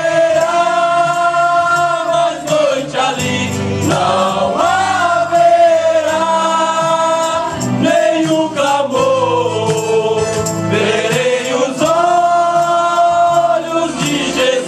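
A men's gospel group singing a hymn together in long, held notes that slide from one pitch to the next.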